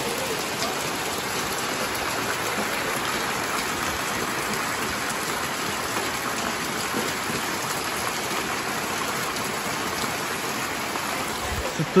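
Heavy rain on a tin roof and the yard, with runoff pouring off the roof edge and splashing into a water-filled plastic drum: a steady, even rush of water.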